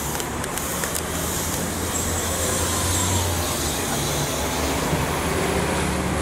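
Compressed-natural-gas city transit bus pulling in to a stop, its engine running with a steady low hum over general street traffic noise.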